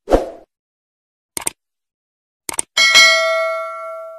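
Subscribe-button animation sound effect: a short swoosh, then two pairs of quick clicks, then a bright bell ding that rings on and fades slowly. No sound from the game underneath.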